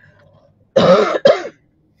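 A woman coughing twice in quick succession.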